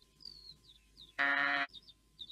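A sheep bleats once, a short steady baa about a second in, while small birds chirp.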